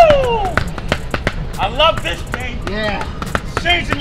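A man's loud, drawn-out groan of effort falling in pitch at the start, then shorter grunts, during a push-up and battle-rope set over background music. Frequent sharp slaps and knocks run throughout.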